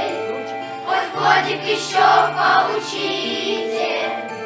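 A children's choir singing with a musical backing track. Held accompaniment notes run underneath, and the voices come in more strongly about a second in.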